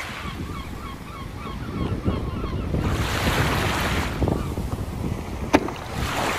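Wind buffeting the microphone over waves washing onto a sandy beach, the surf hiss growing louder about three seconds in. A single sharp click near the end.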